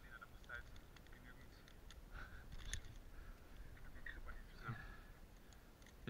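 Faint clicks of aluminium carabiners and a quickdraw being handled, with quiet speech in the background. The sharpest click comes about halfway through.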